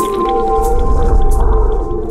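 Electronic synthesizer music: several long held tones over a deep bass drone, with short hissy strokes in the highs. The bass thins out near the end.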